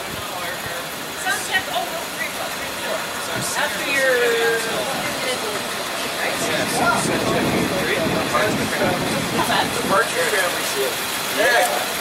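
A bus engine idling steadily, with people talking in the background.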